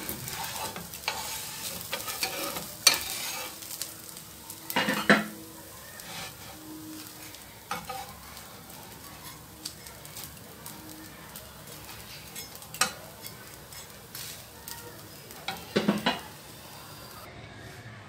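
A dosa frying on a flat pan with a low, steady sizzle. A metal spatula scrapes and knocks against the pan several times as the crisp dosa is loosened and rolled.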